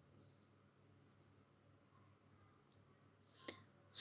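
Near silence, with one faint short click about three and a half seconds in.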